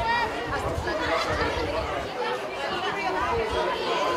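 Indistinct, overlapping voices of players and onlookers calling out around a football pitch, over a low, uneven rumble.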